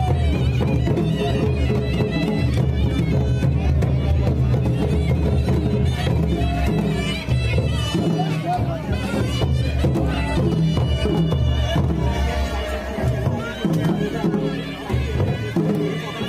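Live Himachali folk band playing Nati dance music: dhol and nagara drums beaten with sticks in a fast steady rhythm under a reedy wind-instrument melody.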